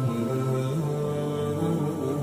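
A man's voice chanting a slow devotional melody in long held notes that step from pitch to pitch, without instruments.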